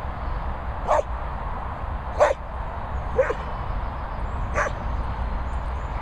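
A dog barking four times in short, separate barks, the second the loudest.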